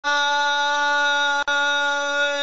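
A man's voice holding one long, steady sung note, with a brief dropout about one and a half seconds in, opening a chanted recitation.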